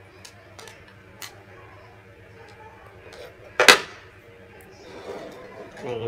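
Small clicks of a USB charging cable, wires and a power-bank module being handled on a table, with one louder, sharp knock a little past the middle.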